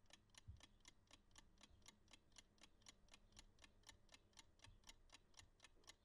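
Mechanical analogue chess clock ticking faintly and evenly, about four ticks a second, with one soft low knock about half a second in.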